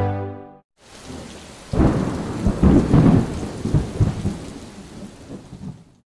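Thunder over steady rain. The rain hiss comes in about a second in, and a sudden loud thunder rumble breaks about two seconds in, rolling for a couple of seconds before fading away.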